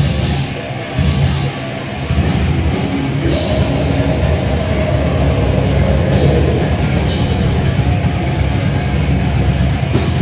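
A grindcore band playing live through a PA: distorted guitar and bass over pounding drums. The band comes in fuller and louder about two seconds in.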